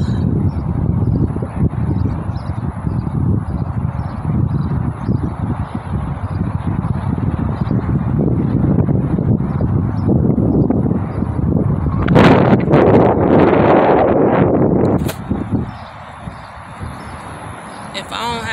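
Wind buffeting a phone's microphone as a steady low rumble, swelling into a louder gust about twelve seconds in and dropping away about three seconds later.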